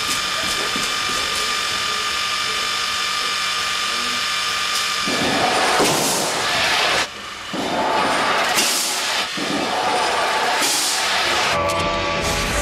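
Film sound effects of a rocket shot: a steady high whine and hiss, then from about five seconds in loud rushing swells broken by short gaps.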